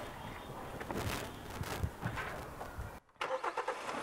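Faint knocks and rattles of hand work inside a car's engine bay over low, steady background noise. The sound cuts out completely for a moment about three seconds in.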